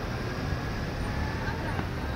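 Busy city street ambience: steady traffic noise mixed with the voices of a crowd of people.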